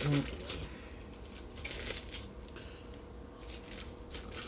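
Faint rustling of a trading-card pack and its cards being opened and handled, over a steady low electrical hum.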